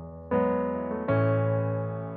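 Piano playing slow chords as a song intro: a new chord is struck about a third of a second in and another about a second in, each left to ring and fade.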